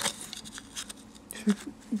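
Plastic spoon scraping and stirring nearly set slush in the frozen cup of a slush maker, a few faint scratchy scrapes, followed by a brief word near the end.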